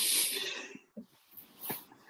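A person's sudden breathy laugh, a snort-like burst of air that fades within about a second, followed by a couple of faint short breaths.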